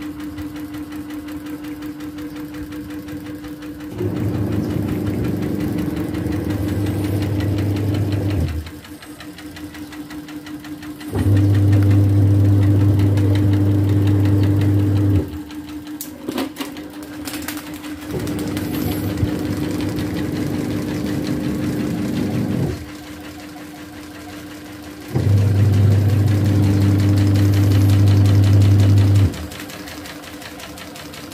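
Small electric fans with lopsided blades spinning and wobbling: a steady motor hum, broken by stretches of about four seconds of a much louder vibrating buzz that starts and stops abruptly.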